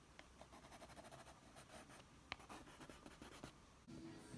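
Coloured pencil scratching on textured paper in quick, repeated shading strokes, faint, with one sharper tick about two seconds in.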